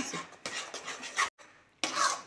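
A spatula stirring and scraping thick gram-flour and buttermilk batter around a non-stick kadhai, in several short strokes. The batter has thickened as it cooks.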